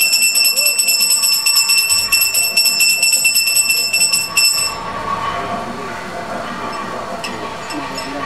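Brass puja handbell rung rapidly and without a break during the camphor-flame offering: a steady high ringing that stops about halfway through, after which voices are heard.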